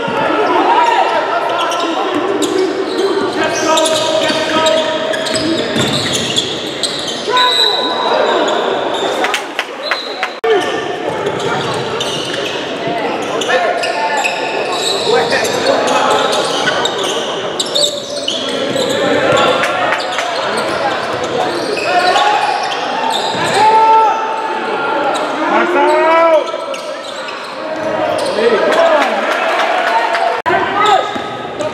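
Basketball game in a gym: a crowd talking and calling out over a basketball bouncing on the hardwood court, with the echo of a large hall.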